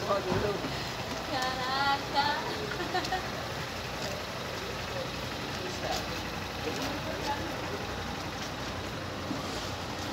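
Steady street noise, a low rumble under a hiss, with scattered voices of bystanders.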